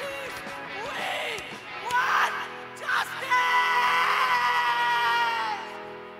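Live rock band: the lead singer shouts short phrases over ringing guitar chords, then holds one long sung note that breaks off near the end.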